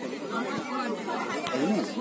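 Indistinct chatter of several people talking at once at a distance, with no one voice standing out.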